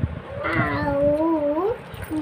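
A young girl's voice drawing out one long sung syllable, holding its pitch and then rising at the end, in the sing-song way of chanting a lesson.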